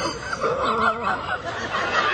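Human laughter, chuckling and giggling.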